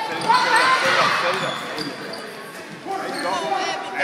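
A basketball being dribbled on a hardwood gym floor, with players and spectators calling out in the large, echoing gym.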